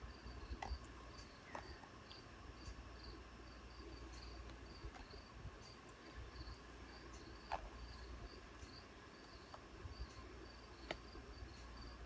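Quiet room with a faint, high chirp repeating steadily a few times a second, and a few soft clicks and rustles from a hairbrush being worked through a synthetic hair topper.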